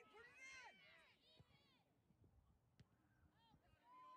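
Faint, distant shouted calls from players and spectators at a soccer field. They are strongest in the first second or so, with a few fainter calls near the end.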